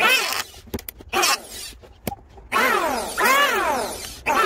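Electric hand planer cutting a wooden handle in repeated strokes, each a rasp that rises and then falls in pitch as the wood is pushed across the cutter. A pause of about two seconds with a few clicks comes about half a second in, and then the strokes start again.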